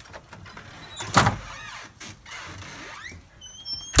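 A porch storm door being opened and swinging back: a sharp bang about a second in, then a short high squeak and another sharp knock at the very end.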